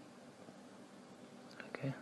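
Near silence: faint steady room tone and microphone hiss, then a man's voice starting about one and a half seconds in.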